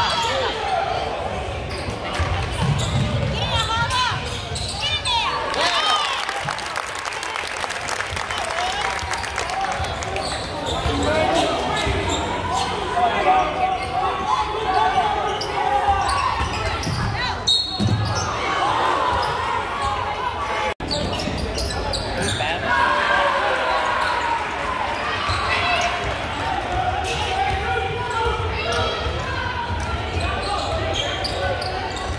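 Basketball game in a gymnasium: the ball dribbling on the hardwood court under the steady echoing chatter and shouts of spectators in the bleachers. The sound cuts out for an instant about two-thirds of the way through.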